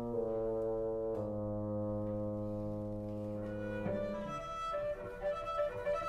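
A wind orchestra with prominent brass holds sustained chords, changing chord about a second in. Around four seconds in, the solo cello enters with a bowed melodic line.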